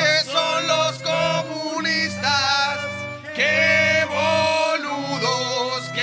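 A violin and a cello playing a song live, with held low cello notes, while several men sing along with them.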